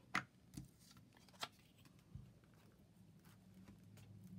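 A few soft clicks and taps from a plastic glue stick and its cap being handled and set down, the sharpest just after the start, over a faint low hum.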